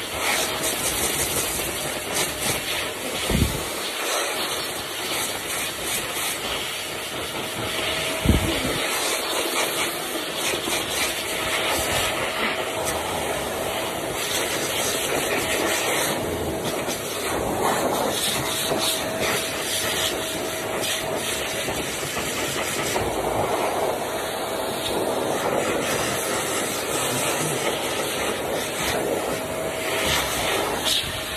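Pet blaster (high-velocity) dryer on a low setting, blowing air through its hose at a cat's fur: a steady rushing hiss with a faint whine that comes and goes. Two soft low knocks, at about three and eight seconds.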